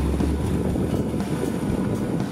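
Sea waves washing and breaking over rocks at the shoreline, a steady rush of surf with wind rumbling on the microphone.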